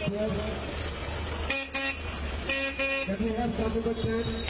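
Vintage car horn giving four short toots in two quick pairs, about a second apart, over a low running engine.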